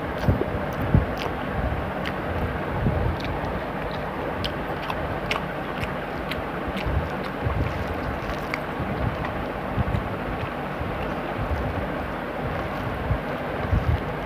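Fingers mixing rice and curry on a steel plate and chewing, heard as small wet clicks scattered throughout. Under them runs a steady rushing noise with irregular low rumbles, like wind on the microphone.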